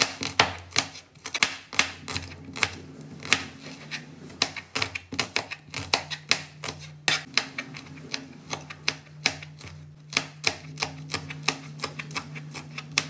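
Chef's knife chopping shallots on a plastic cutting board: quick, uneven taps of the blade against the board, about three to four a second.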